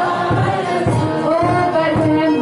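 A congregation singing a hymn together in unison, many voices holding long notes, with a regular low beat under the singing.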